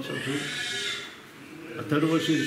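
A man's drawn-out, breathy vocal sound lasting about a second and fading away, with speech starting again near the end.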